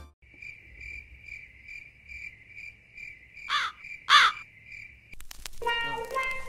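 Cricket chirping sound effect, the comic 'awkward silence' gag: a steady chirp pulsing about twice a second, with two louder swooping calls about three and a half and four seconds in. Music comes back in near the end.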